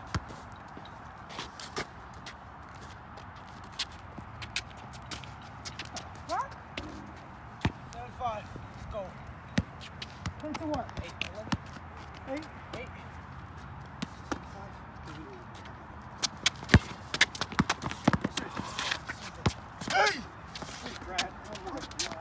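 Basketball bouncing on a concrete court and sneakers stepping and scuffing during play, heard as irregular sharp knocks that come thicker and louder in the last few seconds. Brief voices now and then.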